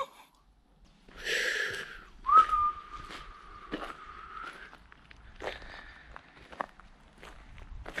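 A person whistles one long, steady note that flicks up slightly at the start, after a short breathy rush, while footsteps sound on gravel and rubble.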